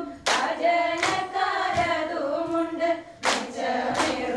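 Women singing a Thiruvathira song together in unison, with the dancers' hand claps sharply marking the beat.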